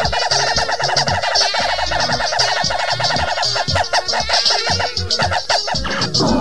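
Perreo (reggaeton) DJ mix played from a cassette: a steady kick-drum beat with a rapid, stuttering chopped sound over it for the first half, loosening into a sparser pattern afterwards.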